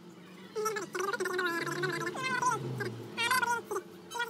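A voice singing in short phrases with a quickly wavering pitch, starting about half a second in, over a low steady hum.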